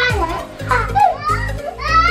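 Small children's high voices laughing and calling out as they play, over background music with a steady beat.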